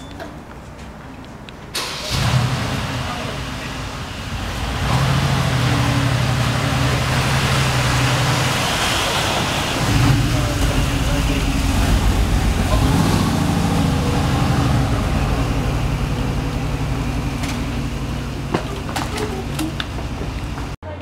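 Mercedes-Benz G-Class SUV engine starting about two seconds in, then running steadily as the vehicle moves off, under a loud rushing noise.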